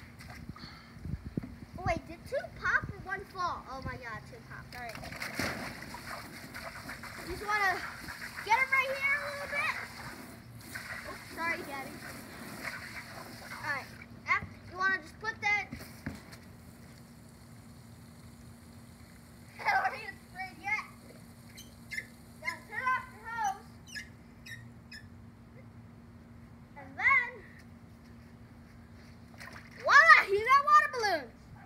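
Water from a garden hose splashing into a plastic tub as a bundle of water balloons is filled, with a child's voice on and off.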